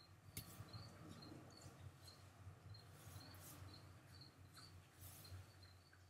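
Near silence: a pencil shading on drawing paper with a faint, soft scratching and a few light strokes. A faint high chirp repeats about twice a second.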